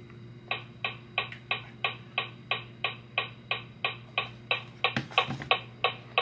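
Metronome clicking at a steady tempo, about three clicks a second, starting about half a second in.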